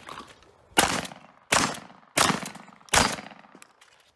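Four shotgun shots about two-thirds of a second apart, each a sharp crack with a short echoing tail.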